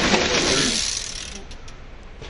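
BMX bike passing close by on a dirt trail: tyre noise on the dirt and a ratcheting freewheel clicking, loudest at first and fading away over about a second, followed by a few faint clicks.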